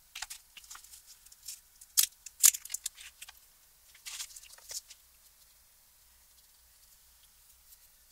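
Light taps and clicks of board and paper being handled on a work table, with a metal angle weight set down on a board; two sharper knocks come about two seconds in, and the last few seconds are quiet.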